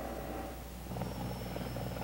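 CH-54 Tarhe flying-crane helicopter in a forward takeoff, heard faintly: a steady low rotor thrum with fine rapid pulsing that strengthens about a second in, with a faint thin high whine above it.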